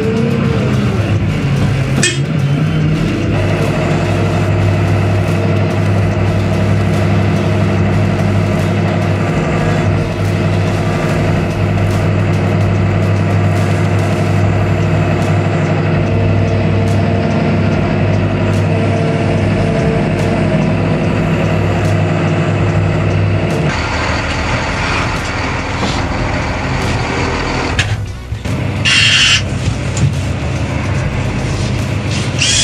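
Diesel engine of a Huddig 1260D backhoe loader running steadily under the operator's control, a flat drone with no revving. Its sound changes a little over two-thirds through, and a short hiss comes near the end.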